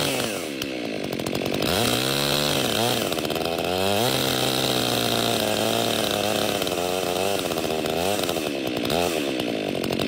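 Petrol chainsaw cutting through a standing tree trunk during felling, running hard throughout, its engine note dropping under load and picking back up a few times.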